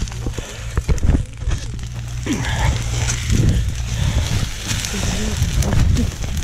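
Dry scrub burning close by, with many sharp crackles and snaps over a steady low rumble, while people shout indistinctly in the background.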